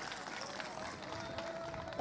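Faint murmur of a large crowd gathered outdoors, with distant voices, heard through the speaker's microphones.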